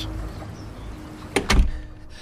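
A door being opened: two sharp clicks followed by a heavy low thump about one and a half seconds in.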